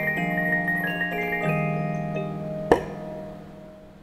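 Reuge Dolce Vita cylinder music box playing an operatic tune, its pinned brass cylinder plucking the steel comb. About two and a half seconds in there is a single sharp mechanical click, and the last notes ring away to quiet: the end of a tune, with the cylinder shifting to the next one.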